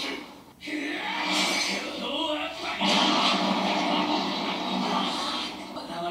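Soundtrack of the anime episode being watched: a character's voice in a dense mix of episode sound, which gets louder about three seconds in.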